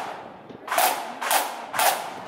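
Scout marching band's snare drums struck together in sharp accents, three strokes about half a second apart.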